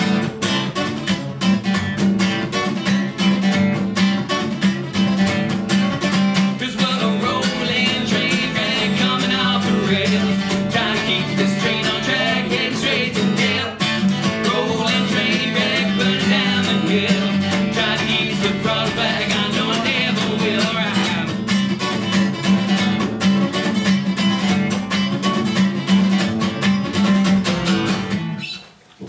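A country-bluegrass song on a strummed Epiphone acoustic guitar and a plucked upright double bass, with singing from about a quarter of the way in until about three quarters through.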